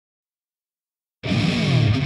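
Silence, then a little over a second in a hard-rock track comes in loud with distorted electric guitar, its notes sliding down in pitch.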